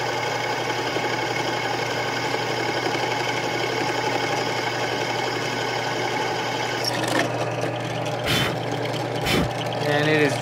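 Drill press running with a steady hum as its bit cuts a hole through the side of a galvanized steel reducer coupling. Near the end come a few short, louder scraping noises as the bit breaks through.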